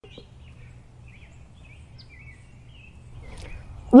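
Outdoor ambience: small birds chirping in short, scattered calls over a low, steady background rumble. A voice begins to call out right at the very end.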